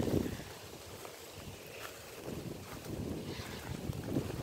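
Wind rumbling on the microphone, loudest at the start and easing after about a second.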